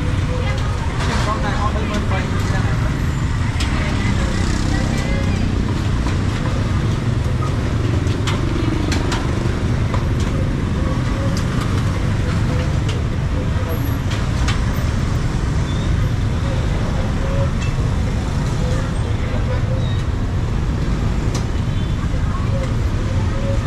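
Busy street-market ambience: a steady rumble of road traffic with people talking in the background and a few sharp clicks scattered through it.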